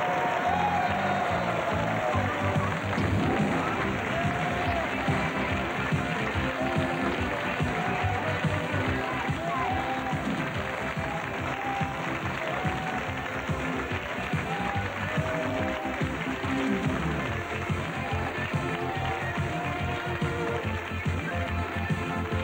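A television programme's closing theme music with a steady beat, with studio audience applause underneath.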